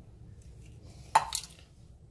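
Eggshell halves dropped into a ceramic bowl: one short, light clink a little over a second in.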